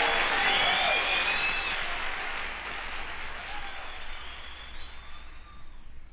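Audience applauding at the end of a live poetry reading, slowly dying away.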